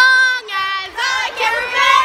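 Young girls singing loudly and unaccompanied, in high voices with long held notes.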